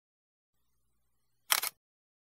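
Dead silence, broken about one and a half seconds in by a brief, sharp double click.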